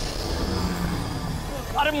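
A low, steady rumble from the serial's dramatic soundtrack, with a faint hiss slowly falling in pitch; near the end a man cries out "arey".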